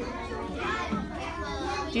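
Several children talking quietly over one another in a classroom.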